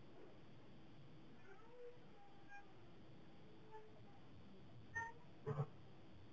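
Quiet room tone with a faint steady hum and a few faint, brief pitched sounds, the clearest two near the end.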